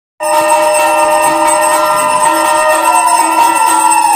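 Puja bells ringing continuously, a dense ringing of many steady overlapping tones that starts abruptly and holds at an even level.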